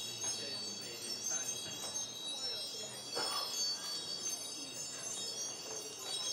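Many high chime tones ringing together in a steady, overlapping shimmer, with fainter wavering sounds lower down.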